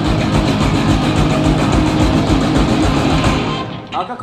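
A live thrash metal band playing: distorted electric guitars over rapid drumming. The song cuts off suddenly near the end.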